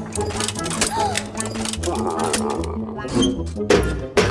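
Cartoon background music with a steady low bass line, under rapid clicking and clanking sound effects as an animated suit of armour walks, with a brief vocal sound about a second in.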